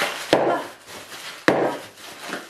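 Clear plastic bag crinkling as it is squeezed and handled, with a few sharp crackles, the loudest about a third of a second and a second and a half in.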